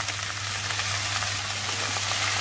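Chopped bottle gourd frying in oil in a steel kadai, a steady even sizzle, with a low steady hum underneath.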